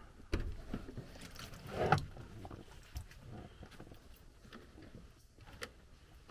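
Black rubber hoses being handled and pulled loose inside an open furnace cabinet. A knock comes just after the start and a louder rustling scrape about two seconds in, followed by faint scattered clicks and rubbing.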